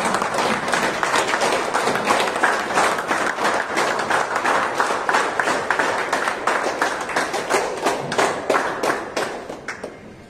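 Audience applauding: many people clapping steadily, dying away near the end.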